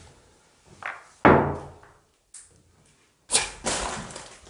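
A few sharp knocks and thuds: a light one just under a second in, the loudest a moment later with a short ringing tail, then two more in quick succession near the end.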